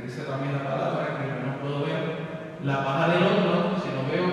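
A man's voice preaching in Spanish in a slow, drawn-out cadence with long held syllables.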